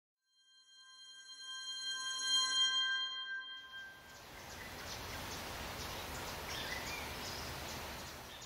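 Logo-animation sound design: a chord of steady synthesized tones swells and fades over the first three and a half seconds. It gives way to a steady hiss of static with scattered crackles and a small chirp, matching a pixelated glitch transition.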